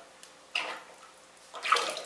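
Liquid glaze of wood ash and red clay being poured out of a raw clay pot into the glaze bucket. There is a splash about half a second in and a longer pouring splash near the end.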